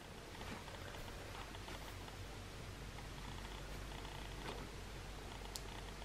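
Faint room tone: a steady low hum under a light hiss, with one faint click about five and a half seconds in.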